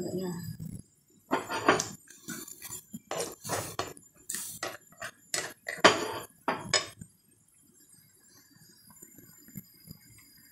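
Spatula scraping and knocking against a pan while stirring vegetables in sauce: a run of irregular clinks and scrapes that stops about seven seconds in.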